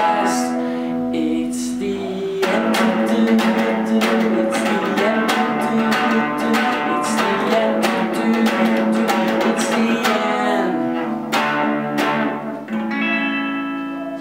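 Electric guitar strumming chords, thick and steady through the middle. Near the end come a few separate strums, then a last chord left ringing out.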